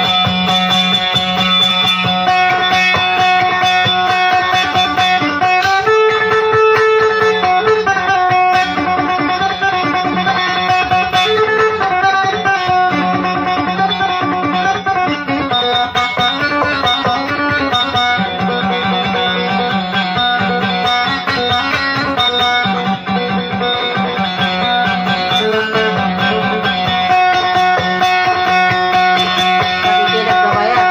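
Amplified plucked string instrument playing a fast, ornamented melody with quickly repeated notes over a steady low drone.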